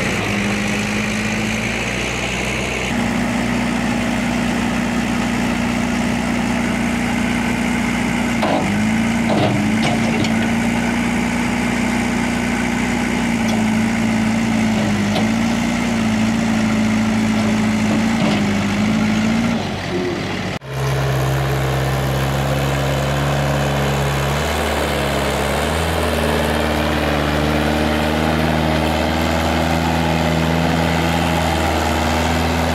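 Mahindra tractor's diesel engine labouring steadily as it hauls a loaded trailer through deep mud, its pitch wavering up and down with the load. About two-thirds of the way through the engine sound cuts off abruptly and a different, steadier engine note takes over.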